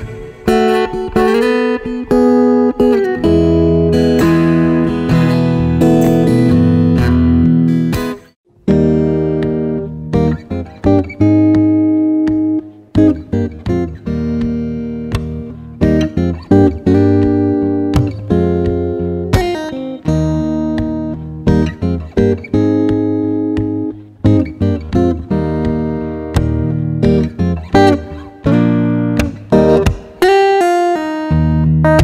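Solo steel-string acoustic guitar played fingerstyle, picked bass notes under chords and melody. One piece ends with a brief break about eight seconds in, then the next piece begins, with the guitar tuned down a half step.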